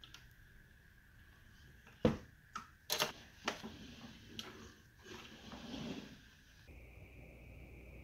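A few light knocks and clicks, with some faint rustling, as a wooden telescope is handled and moved, over a faint steady high whine.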